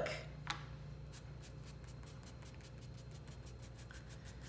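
A chalk pastel stick set down on a cutting mat with a light click, then fingertips rubbing chalk pastel on paper in quick, even, faint strokes, about seven a second, smudging the line outward into a soft glow.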